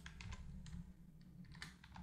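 Faint computer keyboard typing: an uneven run of separate keystrokes as code is entered.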